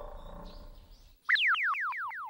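Cartoon comedy sound effect: a quick series of falling whistle-like pitch glides, about four a second, a springy boing-like wobble that starts a little over a second in.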